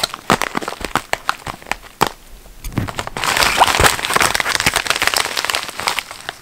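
Plastic poly mailer being handled and crinkled. Sharp crackles come first, then a denser, unbroken stretch of rustling from about three seconds in that eases near the end.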